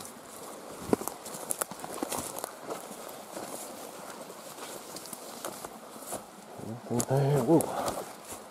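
Footsteps and the rustle of brush and leaves as someone walks through dense undergrowth, with scattered small snaps and clicks. A short vocal sound comes about seven seconds in.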